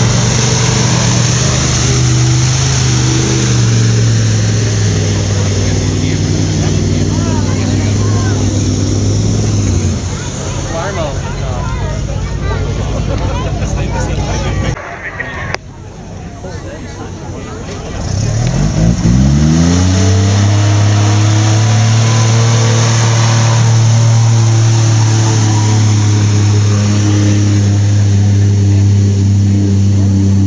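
Mud-bog truck engines running hard: one engine holds high revs, then fades about ten seconds in. After a short break, another engine revs up steeply and holds high revs through the rest.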